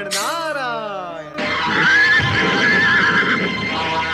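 A dramatic music sting: a sharply struck, stringed-sounding note that slides down in pitch over about a second. About a second and a half in, a louder sound effect for the flying horse-drawn chariot takes over: a noisy rumble with a horse whinnying over it for about a second and a half.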